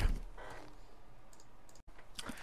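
Pause in a voice recording: a faint, even microphone and room noise floor, with a small click a little past the middle and a brief dropout to dead silence just before the end.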